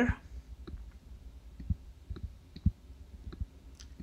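Faint, irregular clicks and taps of a stylus on a tablet screen during handwriting, over a low background hum.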